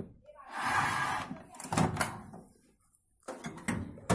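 LG microwave oven's door being opened and its glass turntable tray handled: a rustling clatter about half a second in, then a few clicks and knocks, with more knocks near the end as the glass tray is lifted.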